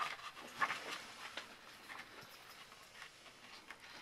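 Pages of a large book being flipped through by hand, giving several brief, faint paper swishes and rustles.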